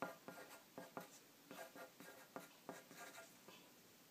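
Pencil writing on paper: a faint run of short, quick strokes that stops about three and a half seconds in.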